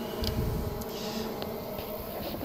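Quiet background of low rumble, the sort a handheld phone microphone picks up while being moved, with a faint steady hum and a couple of faint ticks.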